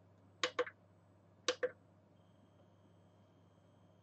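Two short double clicks about a second apart over a faint low hum. A faint steady high tone starts a little past halfway.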